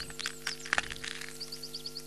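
Channel ident jingle: a held chord with small cracking clicks over it and a quick run of short high chirps in the second half, sound effects for a cartoon egg cracking open.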